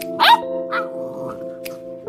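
Background music of sustained, held tones. A short, loud, high-pitched vocal sound comes about a quarter second in, and a softer one follows about half a second later.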